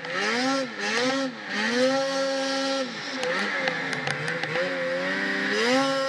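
Snowmobile engine revving while riding through deep powder, the throttle worked on and off. Its pitch rises and falls several times in the first second and a half, holds steady for about a second, then swoops up and down again.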